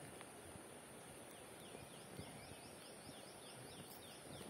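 Near silence, with a faint bird calling in the background: a quick series of short descending notes, about four to five a second, starting about a second in, over a steady high hiss.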